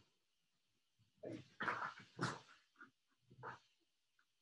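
An animal's voice: about five short, quiet calls in quick succession.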